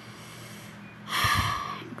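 A person's loud breath, heard once about a second in and lasting under a second.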